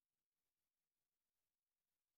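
Near silence: only a faint, even hiss.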